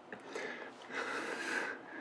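A man breathing heavily and softly during a kiss: two drawn-out, breathy breaths.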